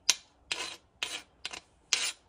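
Flat hand file drawn in short strokes across a steel morse-taper lathe dead centre, about two strokes a second. The filing is a hardness test: one dead centre is soft under the file and the other rock hard, and the difference is meant to be heard.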